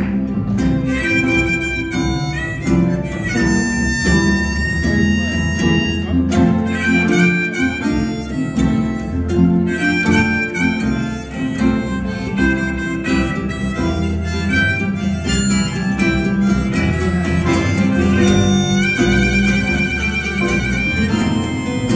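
Acoustic jug-band blues in C: a harmonica played in a neck rack carries the lead over strummed ukuleles and a bass, holding one long note a few seconds in.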